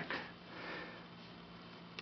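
A soft, quiet breath drawn in through the nose, swelling and fading about half a second to a second in, over a faint steady hum.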